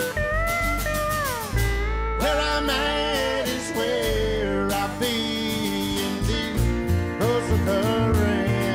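Country band playing an instrumental passage: a pedal steel guitar takes the lead with gliding, bending notes over strummed acoustic guitars and upright bass.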